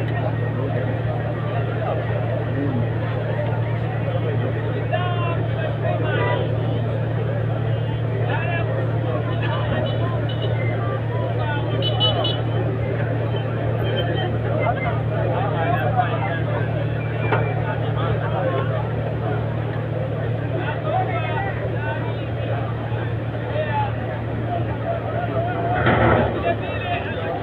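A large crowd talking and calling out all at once, over a steady low engine hum.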